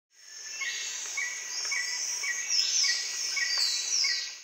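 Nature-sound bed of birds and insects: a high insect-like buzz with a short chirp repeating about twice a second and a few falling high whistles, fading in at the start.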